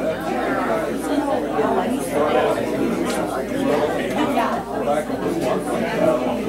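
Several people talking at once in a large room: overlapping, indistinct conversation with no single voice standing out.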